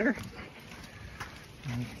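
Faint footsteps and rustling through marsh grass, with a low outdoor rumble, between a man's words.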